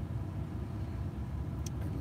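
Steady low rumble of an idling car heard from inside its cabin, with a faint tick near the end.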